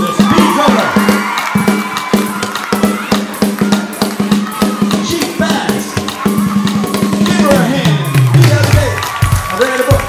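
Rock-and-roll band music: a guitar solo of held, bending notes over a steady drum beat and bass. Near the end a low note slides downward.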